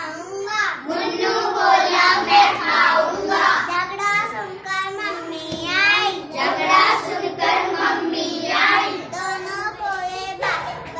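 A young boy singing a Hindi children's rhyme in a high child's voice.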